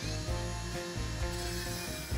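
Cordless angle grinder with a cut-off disc cutting into scrap steel, a steady high grinding sound, under background music.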